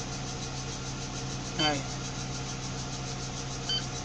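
Tadano 30-tonne crane's engine idling with a steady low hum, heard inside the operator's cab. A short electronic beep from the crane's control panel comes near the end.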